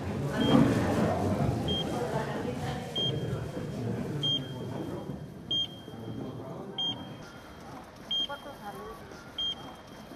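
Heart-monitor style beep: a short high tone repeating about every one and a quarter seconds, with a faint steady tone between the beeps in the later half. Voices and bustle sound underneath in the first few seconds.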